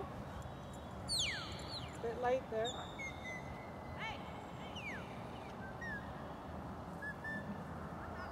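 A series of high whistled notes, the loudest a long whistle sliding down in pitch about a second in, followed by shorter falling and held whistles and a few brief chirps, over a steady background hiss.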